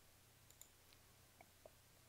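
Near silence: faint room tone with three soft clicks, one about half a second in and two close together late on.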